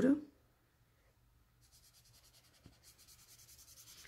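Felt-tip marker tip rubbing on sketchbook paper in quick repeated colouring strokes, faint, starting about a second and a half in. The marker is held lying flat so more ink comes out.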